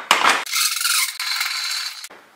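Metal parts of a table saw being handled: a couple of sharp knocks, then a steady scraping rub for about a second and a half that stops abruptly.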